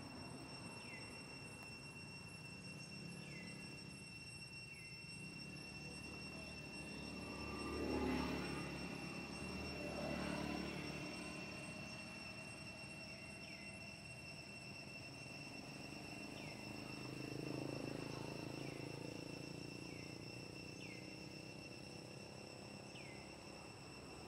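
Outdoor ambience: a steady high insect-like drone with short falling chirps every second or two, and a low distant rumble that swells and fades twice, about a third of the way in and again later.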